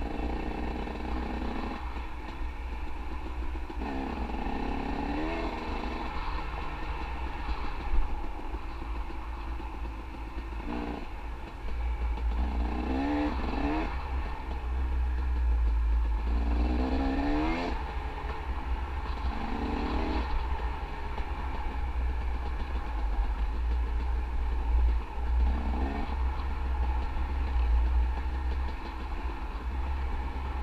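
Dirt bike engine being ridden, revving up in repeated rising runs and easing off between them, over a steady low rumble. There is a sharp knock about eight seconds in.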